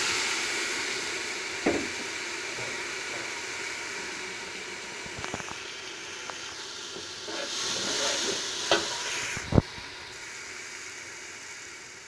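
Water poured into hot oil and fried onions in a large metal pot, hissing and sizzling loudly at once and then slowly dying down. A few sharp knocks sound over it.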